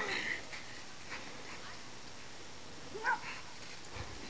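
Dog giving two short high-pitched whines, one at the start and one about three seconds in.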